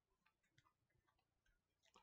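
Near silence: a pause between spoken sentences.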